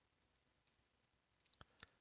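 Faint computer keyboard keystrokes: a couple of isolated key clicks, then a quick run of several near the end as a word is typed.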